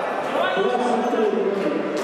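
Voices talking in a large, echoing sports hall, with a ball bouncing on the wooden court.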